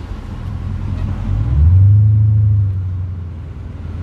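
Car engine and road noise heard from inside the cabin while driving: a low rumble that swells about halfway through and then eases off.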